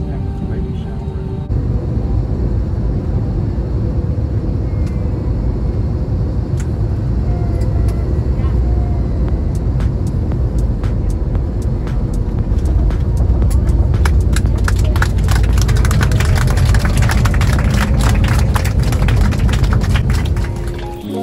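Inside a jet airliner's cabin while it rolls along the runway: a steady low engine and road rumble that grows louder, with quick rattling clicks of the cabin fittings crowding in over the second half.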